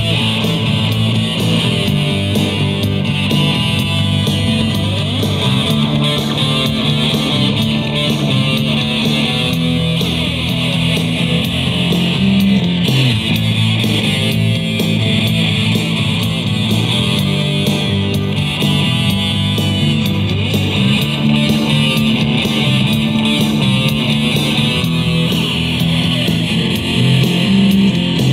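A street band playing guitar rock on amplified electric bass and acoustic-electric guitar, with a steady bass line and strummed guitar.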